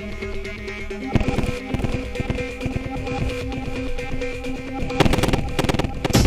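Glitchy IDM electronic music: sustained tones under fast, dense clicks, changing texture about a second in, with a thick burst of clicks near the end.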